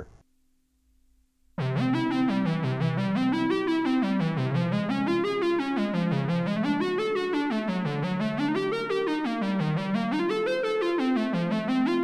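Synthesizers.com analog modular synthesizer playing a fast arpeggio up and down through a held chord, starting about a second and a half in. The pattern is transposed to different pitches by keys in the keyboard's lower split, which feed the Q174's Add input.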